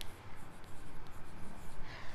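Chalk writing on a blackboard: a run of short, irregular strokes as a couple of words are written.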